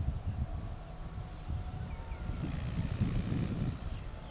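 Wind buffeting the microphone in an uneven low rumble, with faint high chirps above it.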